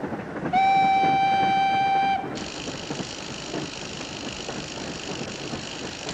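A train whistle from a film soundtrack blows one steady, high note for about a second and a half. A steady hiss then follows, over the low running noise of the train.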